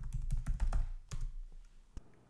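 Keystrokes on a ThinkPad laptop keyboard as a login password is typed: a run of irregular key clicks that thins out, with one last key press just before the end.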